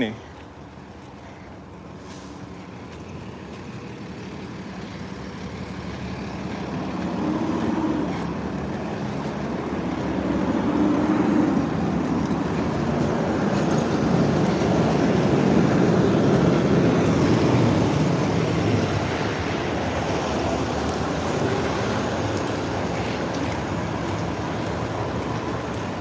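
Street traffic, with a heavy vehicle's engine and tyres swelling slowly over several seconds as it passes close, loudest about two-thirds of the way through, then easing off.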